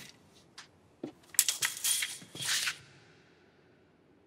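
Handling of stacked heavy sacks: a knock about a second in, then a burst of harsh scraping and tearing noises that dies away before three seconds.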